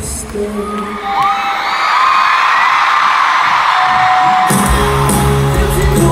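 Concert crowd screaming and cheering, with many high shrieks over it, while the band drops out. About four and a half seconds in, the live rock band comes back in with drums and bass.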